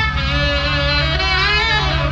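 Live jazz band playing, with a sustained melody line wavering in vibrato over a steady bass.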